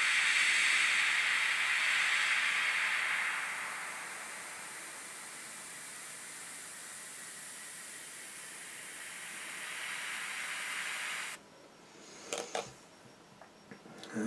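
Airbrush spraying dark green paint at a lowered air pressure: a steady hiss, louder for the first few seconds and then softer, that cuts off suddenly about eleven seconds in. A few light clicks follow.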